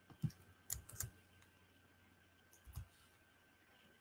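A few faint, scattered clicks of computer keys being pressed: about four short taps over the few seconds.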